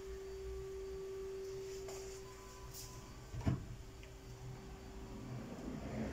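A steady, single-pitched hum that fades out about five seconds in, with one sharp knock about three and a half seconds in.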